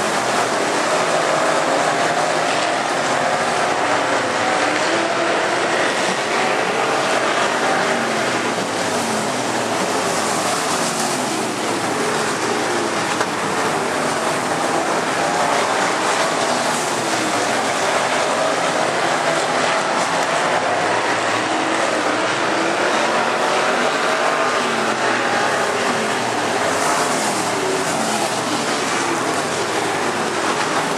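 Several dirt-track modified race cars' engines running at racing speed, heard together as a dense, steady drone whose overlapping pitches keep rising and falling as the cars go through the turns.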